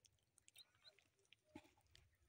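Near silence, with a few faint small ticks.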